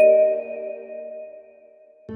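Single chime-like note from an animated logo intro sting, struck once at the start and ringing out, fading slowly to almost nothing over two seconds.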